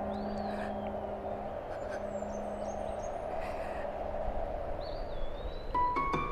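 Steady wind ambience with a low held tone that fades out about four seconds in. Thin gliding bird calls, rising then falling, sound near the start and again near the end.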